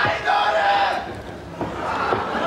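A single loud voice gives one long, held shout over the arena crowd's background noise, ending about a second in; the crowd noise carries on beneath.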